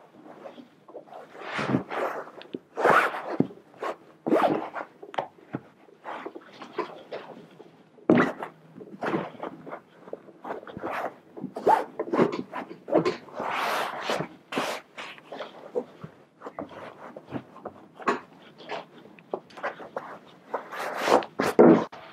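Red plush upholstery fabric and foam rubbing and scraping as a padded armrest cover is pushed and worked down into a sofa armrest by hand: irregular rasping strokes, one or two a second, some louder than others.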